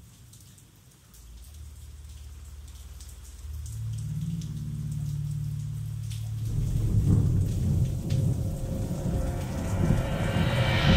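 Rain and thunder sound effect at the opening of a rock song. Faint rain is heard first, then a low thunder rumble builds from about a second in and grows steadily louder. A low steady tone joins about halfway, and the sound swells fuller near the end as the music comes in.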